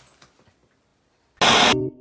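Near silence, then about one and a half seconds in a short, loud burst of TV-static noise, an editing sound effect for a 'please stand by' cut. Keyboard music starts right after it with a few spaced notes.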